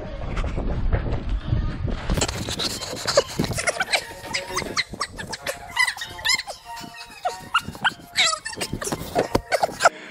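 Loose foam blocks in a gymnastics foam pit rustling, squeaking and knocking together as a person jumps in and wades through them. The first couple of seconds are dominated by heavy movement noise, and a few short vocal sounds come through among the crackling foam.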